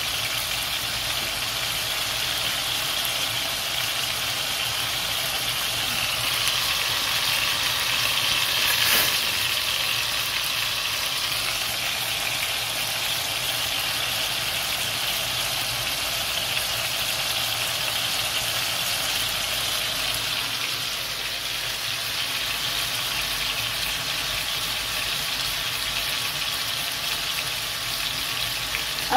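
Steady sizzle of chicken pieces and mushrooms frying in a stainless steel pan over a gas flame, with a single brief sharp click about nine seconds in.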